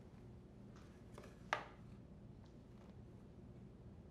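Quiet room tone with a few faint handling clicks and one short, sharp knock about a second and a half in: a GE dishwasher's plastic inner door being handled and laid down on a blanket-covered work table.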